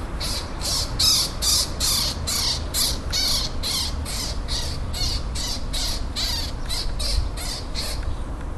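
Eurasian magpie giving a long run of harsh chattering calls, about two or three a second, loudest in the first two seconds.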